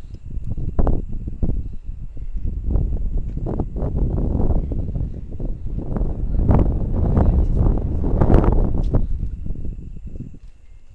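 Wind buffeting a body-worn action camera's microphone as a rope jumper swings on the rope, a low rushing noise that rises and falls in gusts and is loudest about six to nine seconds in.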